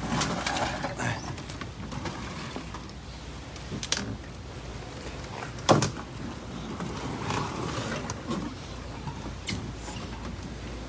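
Handling noise of an aluminum canoe being moved by hand through brush: rustling and scraping, with two sharp knocks about four and six seconds in, the second louder.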